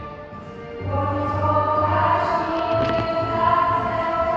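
Song with a group of voices singing held notes over an accompaniment with a pulsing bass. The music drops back briefly at the start, then comes back in fuller.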